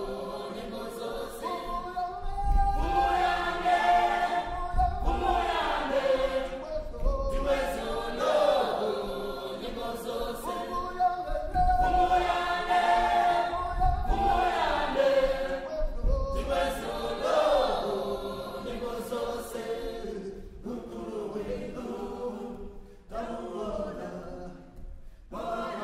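A choir singing together, the voices rising and falling in repeated phrases a few seconds long.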